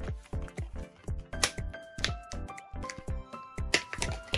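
Background electronic music with a steady beat, with two sharp clicks, one about a second and a half in and one near the end.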